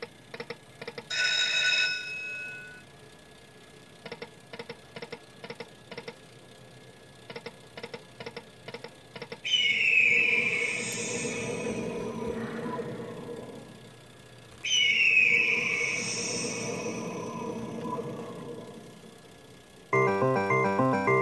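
Aristocrat Buffalo slot machine's bonus sounds: groups of quick electronic ticks as the reels spin and stop, with a short chime about a second in. Twice, near the middle and again about five seconds later, a loud win sound starts with a falling tone and fades over several seconds, marking a win during the free games.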